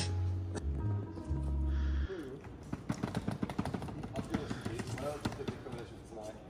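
Loud, low, steady music for about two seconds that cuts off suddenly, followed by footsteps on a stone pavement, a rapid run of short taps, with a few brief voices.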